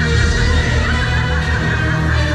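Loud show soundtrack music played over an outdoor sound system: dense sustained notes with some sliding high tones.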